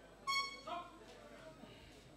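A short, high-pitched, steady tone about a quarter second in, the signal ending the first round of a kickboxing bout, followed by a fainter, shorter sound.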